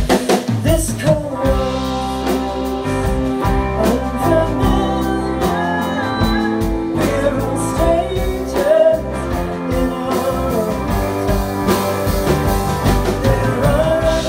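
Live rock band playing: two electric guitars, bass guitar and a drum kit, with singing over them, loud and steady.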